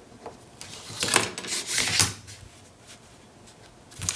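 Cardstock and a clear acrylic ruler being slid and handled on a cutting mat: a short run of scraping and rustling, loudest about one and two seconds in, then settling.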